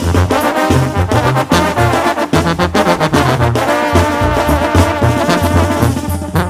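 Mexican banda music in an instrumental passage: trumpets and trombones play held notes over a walking bass line and steady drum beats, with no singing.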